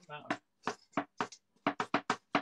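Oil glugging out of an upended glass bottle into a frying pan: a run of short, irregular glugs that come quicker towards the end.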